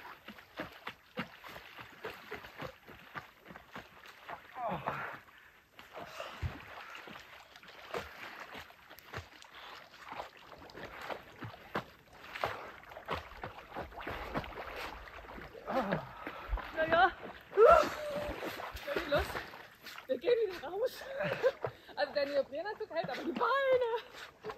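Lake water splashing and lapping, with the splashes of people wading and swimming. In the second half, faint voices call out from the water.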